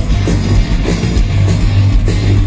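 A live metal band playing loud and fast, with electric guitars, bass and a drum kit with steady drum strikes and cymbals, through a large festival sound system. No vocals in this stretch.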